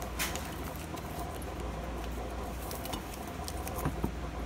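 Light rustling and a few small clicks as paper oxygen absorber packets are handled and dropped into glass canning jars of cookies, over a low steady hum.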